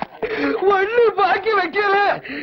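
A man's voice wailing in drawn-out, wavering cries that rise and fall, more sung than spoken.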